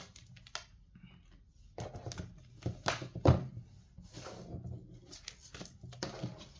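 Tarot cards being handled: a scatter of short rustles, flicks and taps, the loudest a little past three seconds in.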